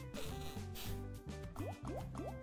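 Online slot game's soundtrack during free spins: looping music with a pulsing bass pattern under held tones, and a run of quick rising pitch sweeps from the game's sound effects near the end as the reels land.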